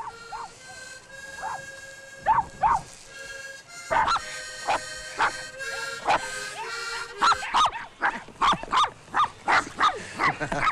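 Several small dogs barking, a few scattered barks at first, then quick repeated barking of about two barks a second in the last few seconds.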